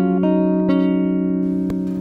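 Background music on plucked guitar: a few notes picked and left ringing together.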